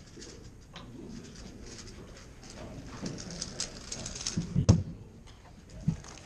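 GAN356X 3x3 speedcube being turned fast, its plastic layers clicking and clacking in quick runs. There is a loud thump about three-quarters of the way in and another near the end.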